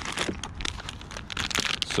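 Clear plastic bag of soft-plastic swimbaits crinkling as it is handled, an irregular run of crackles.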